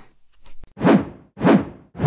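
End-card animation sound effects: three quick whooshing hits about half a second apart, each starting sharply and trailing off.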